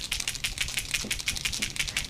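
Two capped masking-fluid markers being shaken hard by hand, the mixing ball inside each rattling in a rapid run of clicks. The shaking mixes the fluid to get a new marker started.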